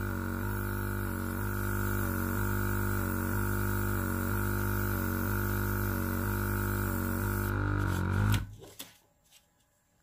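Oasser mini airbrush compressor running on its low setting, a steady hum with a slight regular waver. It cuts off suddenly about eight seconds in, leaving near silence.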